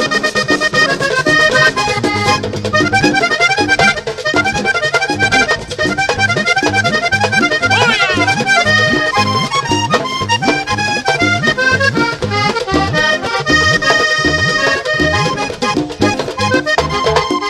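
Vallenato music played by a band led by a diatonic button accordion running melodic lines, with percussion underneath and no singing. A quick sweeping glide cuts across the notes about halfway through.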